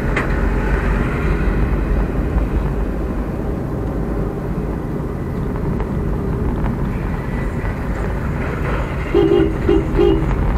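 Steady road and engine rumble of a moving car, heard from inside the cabin. Near the end a vehicle horn sounds a few short beeps.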